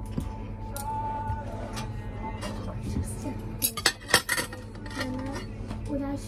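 Metal knife and fork clinking and scraping against a ceramic dinner plate while food is cut. A few sharp clinks, the loudest about three and a half to four seconds in, over background music.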